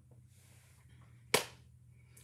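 A single sharp hand clap, palms brought together once about a second and a half in, over a faint low steady hum.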